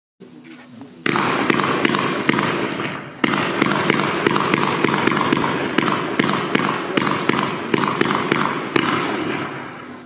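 A 25-shot 30 mm firework mine cake firing in quick succession. It makes a fast run of launch thumps, roughly four a second, over a continuous rushing hiss of ejected stars. The run starts about a second in, pauses briefly near three seconds, and fades out just before the end.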